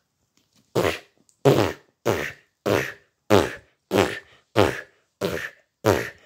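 A rapid series of about nine short fart noises, evenly spaced about every 0.6 seconds.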